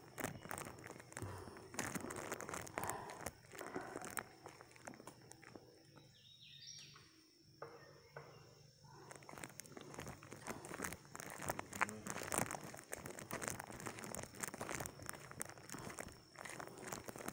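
Footsteps crunching on dry leaves and twigs of a woodland trail, with leaves and brush crackling as someone walks. The steps go quieter for a few seconds in the middle, then pick up again.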